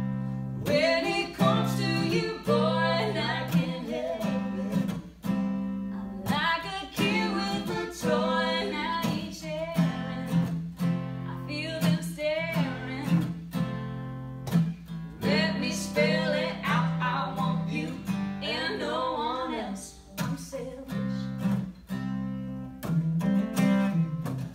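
Live acoustic country song: two acoustic guitars strummed together under sung vocal lines, with short breaks between phrases.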